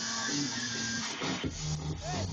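Loud electronic dance music from a live DJ set: a hissing wash of noise over a held tone, then the kick drum and bass come back in about one and a half seconds in.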